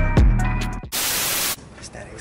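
Background music fading out, then about a second in a half-second burst of static hiss, a video-edit transition effect, before a low, quiet background.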